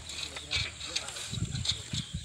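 Bicycle rolling on bare steel wheel rims with no tyres over dirt and grass, giving irregular knocks and rattles.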